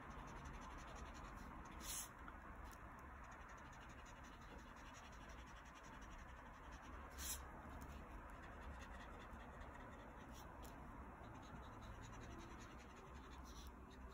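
Faint scratching of a felt-tip Crayola marker drawing lines on paper, with a few brief clicks.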